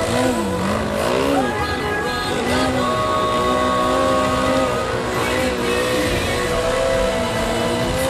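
Engine of a radio-controlled aerobatic model airplane running in flight over background music, its pitch swooping up and down in the first second or so, then holding steadier with small rises and falls.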